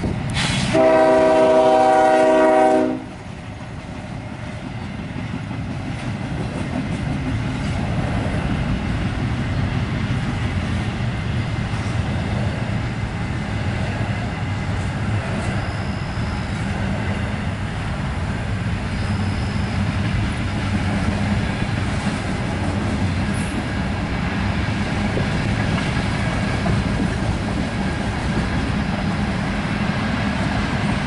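A CSX ES40DC diesel locomotive's multi-note horn blows a long blast for a grade crossing that cuts off about three seconds in. Then comes the steady rumble and clickety-clack of a long freight train's cars, double-stack container cars and tank cars, rolling past, growing louder over the next few seconds.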